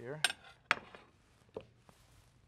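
Square ceramic plates set down and slid into place on a kitchen countertop: four sharp clinks and knocks, the first two loudest.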